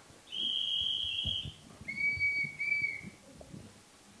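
A high, steady whistling tone held for about a second, then two shorter, lower whistling tones in quick succession.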